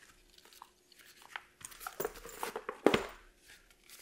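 Small accessories and their packaging being handled: irregular crinkling, crackling and light clicks, with one sharper click about three seconds in.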